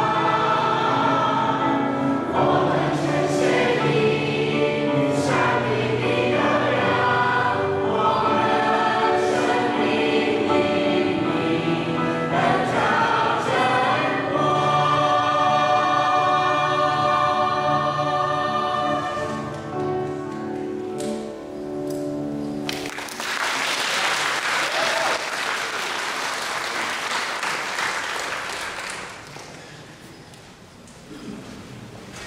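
A small mixed choir singing a hymn under a conductor, drawing out a long held final chord, then stopping about three quarters of the way through. Audience applause follows and fades away near the end.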